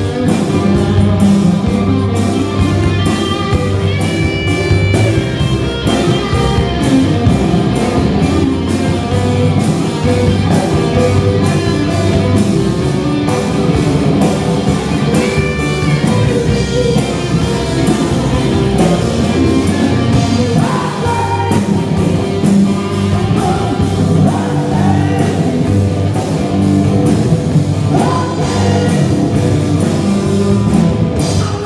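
Live rock band playing at full volume: a male lead vocal over drum kit, electric guitars and keyboard, with a steady driving beat.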